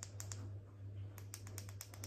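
A ring light's control buttons being pressed repeatedly, giving a quick, irregular run of faint light clicks as the brightness is stepped.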